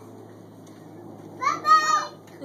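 A young child's high-pitched, excited call, starting about a second and a half in after a stretch of low background noise.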